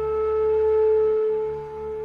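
Background music: a single sustained note held steady with faint overtones over a low drone, swelling slightly and easing off near the end.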